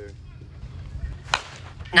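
A softball bat (Axe Inferno senior slowpitch bat) strikes the ball with one sharp crack about a second and a half in, over a low steady rumble of wind on the microphone.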